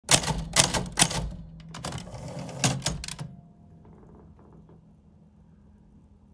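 Typewriter typing: about eight sharp key strikes over the first three seconds or so, some in quick pairs, and then the typing stops.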